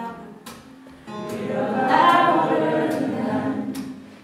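Live acoustic folk song: a woman's singing voice holds a long note over acoustic guitar. It swells loudly from about a second in and fades away near the end.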